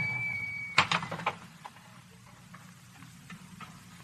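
Radio-drama sound effect of a car swerving into a driveway after a blowout: a brief steady high squeal of the tyres that cuts off under a second in, then a quick cluster of sharp knocks, after which only faint ticks remain.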